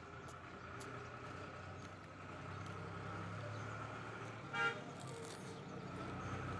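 A single short vehicle horn toot about four and a half seconds in, the loudest sound, over a steady low hum of a running engine.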